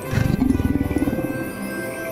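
A low, pulsing animal growl sound effect voicing the cartoon dragon, loudest at first and fading out after about a second and a half, over soft sustained background music.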